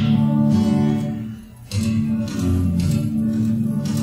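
Acoustic guitar strummed to open a song. A first chord rings out and fades, then the strumming starts again about a second and a half in and carries on in a steady pattern.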